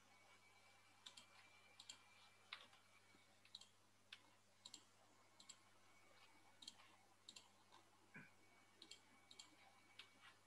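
Faint, irregular clicking from someone working at a computer, many of the clicks in quick pairs, over near-silent room tone.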